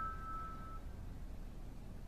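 Piano notes left to ring after being struck, fading away within about the first second, then a faint steady background.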